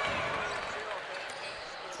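Live basketball game sound in an indoor arena: steady crowd and court noise with a few faint knocks of the ball bouncing on the hardwood floor, slowly growing quieter.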